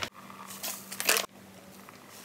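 Plastic bag of shredded cheddar cheese rustling twice, briefly, about half a second and about a second in, as cheese is taken out and sprinkled by hand.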